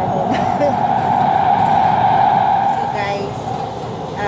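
Metro train running noise heard from inside the carriage: a loud, steady rushing hum that swells through the middle and eases near the end as the train nears the next station.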